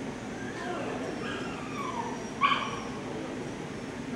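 A dog giving short cries that fall in pitch, then one sharp, loud yelp about halfway through, over background chatter.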